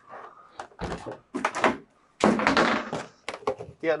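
Hard drum cases knocking and scraping as one is lifted and set down on top of another, with the loudest, longest clatter about halfway through.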